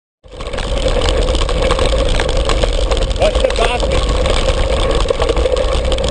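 Steady wind noise buffeting the microphone of a camera mounted on a mountain bike riding fast over a dirt track, with a deep rumble underneath; it starts abruptly just after the beginning.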